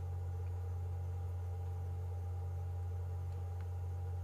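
A steady, unchanging low hum with fainter higher tones above it and no other events.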